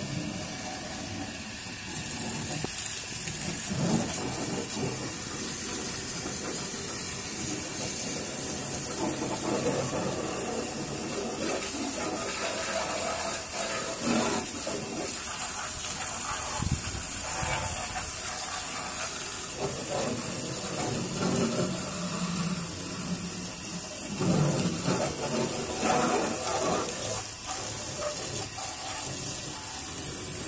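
Water jetting from a pump-fed garden hose onto a car body: a steady hiss of spray with uneven splashing as the jet moves over the panels, heavier for a few seconds near the end.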